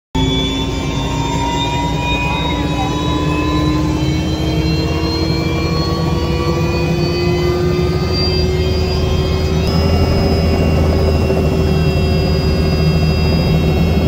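Helicopter engine and rotor heard from inside the cabin on the ground: a steady low drone with a whine that slowly rises in pitch as the engine spools up.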